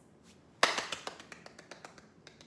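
Hands clapping: one sharp clap about half a second in, followed by a quick run of lighter claps or taps, about eight a second, that fade away.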